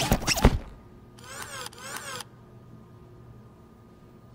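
Film sound effects: squeaks of an animated inflatable vinyl robot's body dying away about half a second in. Then two quick mechanical sweeps, each rising and falling in pitch, over a faint steady hum.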